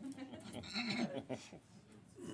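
Indistinct, off-microphone talking among a small group of people in a large meeting chamber, loudest about a second in.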